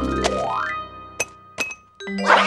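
Cartoon sound effects over music: a sound rising steadily in pitch in the first half-second or so, then two light clinks about a second in as things go quiet.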